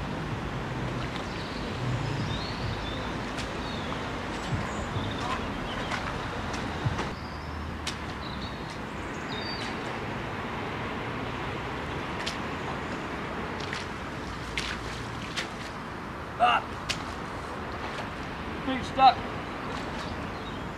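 Open-air ambience over a waterlogged field: a steady hiss with a low hum in the first few seconds, and scattered sharp cracks and clicks as branches are handled. Near the end come two short, loud vocal sounds.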